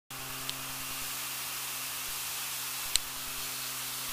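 Steady electronic hiss with a faint low hum underneath, the recording's own background noise, broken by two brief clicks about half a second and three seconds in.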